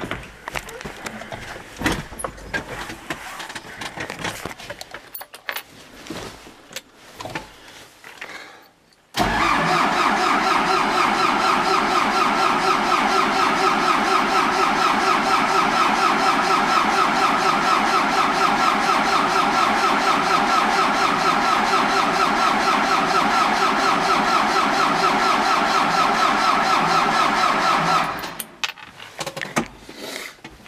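A few clicks and knocks. Then, about nine seconds in, an MTZ-82.1 tractor's four-cylinder diesel engine comes in abruptly, loud and steady, and runs evenly until shortly before the end.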